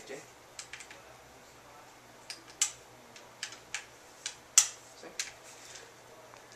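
Irregular sharp clicks and clacks from a G&G M14 airsoft rifle being handled, about a dozen of them, the loudest a little past halfway.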